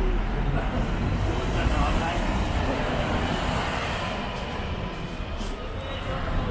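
Steady low rumble of city street traffic, with a few short hisses near the end.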